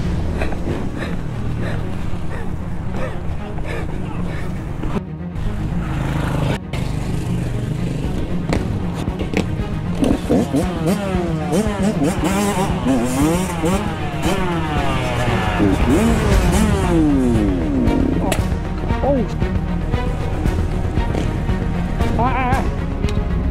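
Music laid over the running engine of a Kawasaki KX112 two-stroke dirt bike, revving up and down as it is ridden, with pitch sweeps in the second half. A man calls out "oh, shit" about halfway through.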